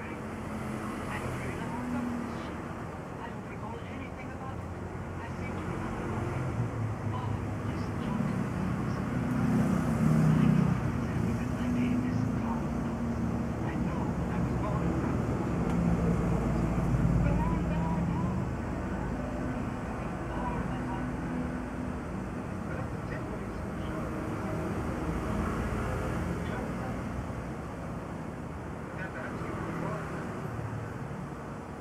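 A low rumbling background noise that swells twice, about a third of the way in and just past the middle, with indistinct voices mixed in.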